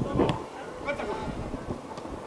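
Men's voices shouting and calling out across an outdoor football pitch, loudest just after the start.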